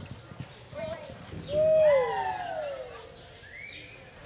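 Hoofbeats of a loping horse on soft arena dirt, then about two seconds in a loud drawn-out call that rises briefly and slides down in pitch, with shorter rising calls near the end.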